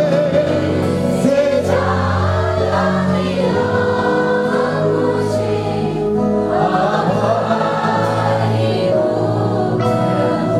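Live Christian worship music: a male lead voice and backing singers singing together over a band with keyboard and guitar, the vocal lines swelling twice.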